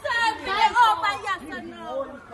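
Speech only: young people's voices talking and chattering.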